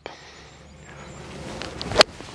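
A golf club's swing, a faint swish growing louder over about a second, ending in one sharp, loud strike of the clubface on the ball right at the end.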